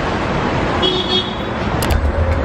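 Steady roadside traffic noise, with a brief car horn toot about a second in and a sharp click near the end.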